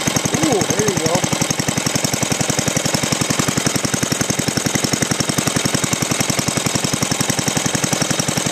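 Cast-iron Briggs & Stratton single-cylinder four-stroke engine, fitted with a glass head and running on natural gas, running steadily with a rapid, even beat of firing pulses.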